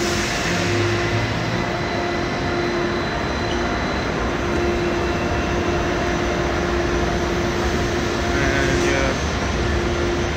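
Deutsche Bahn ICE high-speed train standing at the platform, giving off a steady electrical hum with several held tones over a constant rushing noise, neither rising nor falling.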